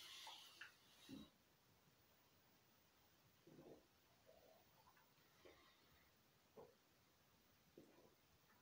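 Near silence, with a handful of faint, short sounds of a man sipping and swallowing beer from a glass.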